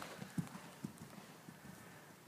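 Hoofbeats of a cantering horse on soft sand arena footing: dull, irregular thuds, loudest as the horse passes close about half a second in, then fading as it moves away.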